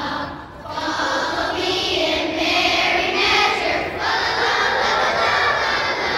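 A group of children singing together, unaccompanied, with a brief break for breath about half a second in.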